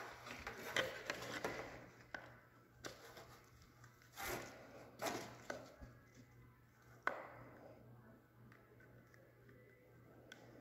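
Hands fitting a plastic fuel pump canister back together and handling its fuel hoses: soft rubbing with a few light knocks and clicks of plastic parts, the loudest about four seconds in.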